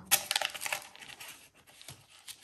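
Thin plastic stencil crinkling and clicking as it is flexed in the hands and laid flat: a run of light crackles in the first second, then a few faint taps near the end.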